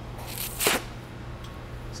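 A short breath blown into a glassblower's steel blowpipe to put a little more air into the hot glass bubble, a brief hiss ending in one sharp puff about two-thirds of a second in. A steady low hum runs underneath.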